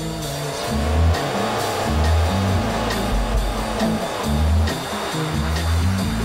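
Band instrumental: bass guitar and drum kit with cymbal hits, under swooping, gliding theremin tones that are thickest in the first half.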